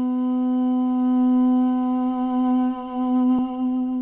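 Armenian duduk holding one long, steady note, with a brief faint click about three and a half seconds in.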